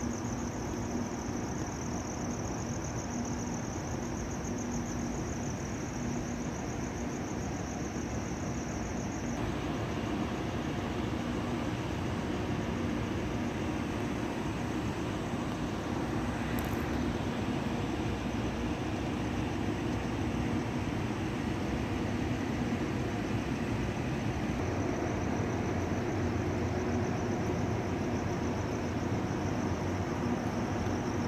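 Idling coach bus engines and traffic: a steady low hum. A high steady trill stops about a third of the way in and comes back near the end.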